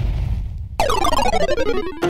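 Electronic logo-sting sound effect: a low rumble dies away, then about a second in a burst of stacked synth tones enters suddenly and slides down in pitch with a rapid pulsing flutter.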